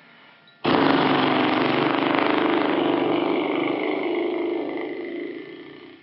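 A man blowing a long lip trill: his lips vibrate on the out-breath with a steady, motor-like buzz. It starts abruptly about half a second in and fades away over the last second or two. It is done to relax the muscles of the face.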